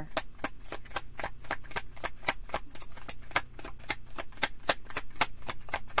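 Tarot deck being shuffled by hand, the cards slapping against each other in a quick, even run of clicks, about seven a second.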